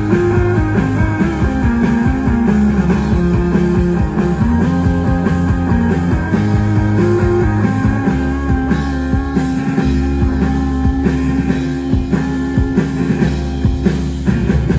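Live rock band playing an instrumental passage through a loud PA, with electric guitar holding sustained notes over a full drum kit. There are no vocals.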